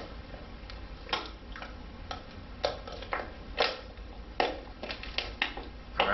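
Plastic water bottle crackling in a series of sharp, irregular snaps and clicks as its cut-off top section is squeezed and pushed back into the bottle to cap it.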